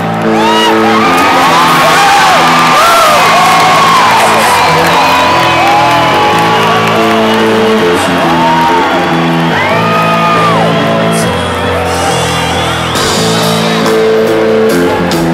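Live rock band playing slow, held chords that change every second or two, under a crowd whooping and shouting throughout.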